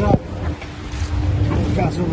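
Car engine running with wind noise on the microphone and a steady low hum, after a shout breaks off just after the start.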